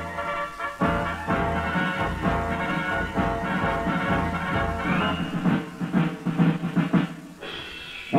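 Instrumental swing-style theme music: held horn chords over drums, with a run of drum hits about five seconds in that dies away near the end.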